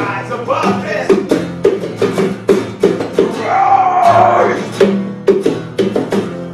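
Live acoustic band playing: two strummed acoustic guitars over evenly spaced drum strikes, with a wavering voice holding a note around the middle.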